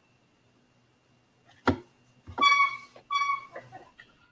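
A sharp click, then two short electronic beeps of the same steady pitch, about three quarters of a second apart, over a faint low hum.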